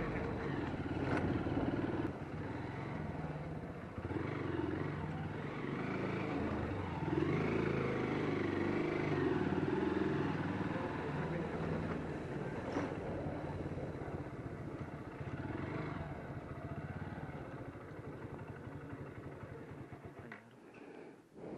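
A small motorcycle engine running as it rides along a lane, its pitch shifting up and down, growing quieter over the last few seconds as it slows. Faint voices sound in the background.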